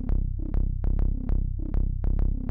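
The bass part of UVI's Super-7 software instrument playing solo: a repeating arpeggiated synth-bass line of short plucked notes, about four a second. Each note starts bright and quickly dulls.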